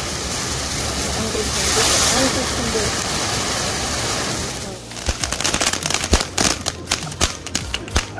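Firework fountain (flower pot) gushing sparks with a steady hissing rush that swells about two seconds in and fades out near five seconds. A quick, irregular run of sharp cracks and pops from firecrackers follows.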